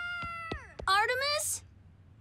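A cartoon character's high held cry slides steeply down in pitch and breaks off about half a second in. A short, whiny, meow-like cry follows about a second in, then a brief hiss.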